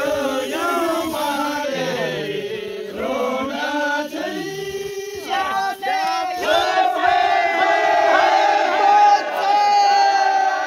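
A group of men's voices chanting and singing together, overlapping, ending in a long held note over the last few seconds.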